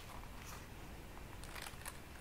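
Faint handling sounds of a small zippered leather card holder being turned over in the hands. A few light clicks and rustles, with a small cluster near the end.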